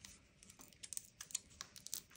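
Faint, irregular small clicks and light taps of craft supplies, such as rubber stamps and their packaging, being handled on a desk.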